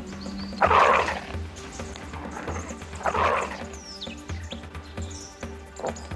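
Dingo snarling twice, two rough bursts about half a second in and about three seconds in, over background music with a steady low beat.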